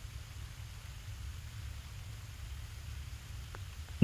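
Quiet background noise: a low steady rumble with a faint hiss, and a single faint click about three and a half seconds in.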